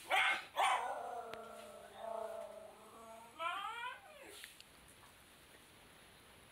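A dog vocalizing in play: a sharp bark, then a second bark drawn out into a long whining call that slides slowly down over about two seconds, then a quick run of rising yips just past the middle.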